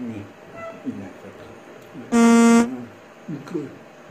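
A single loud, steady horn blast with a buzzing tone, about half a second long, about two seconds in, over faint voice sounds.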